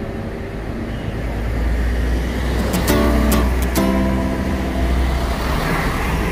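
Steady low rumble of a car on the move, with a few sharp clicks and a brief pitched sound about three to four seconds in.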